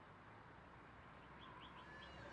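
Near silence with faint outdoor background, and three short, faint bird chirps in quick succession about a second and a half in.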